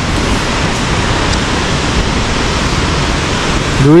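Steady rushing roar of Dunhinda Falls, an even wash of falling-water noise with no break. A voice cuts in at the very end.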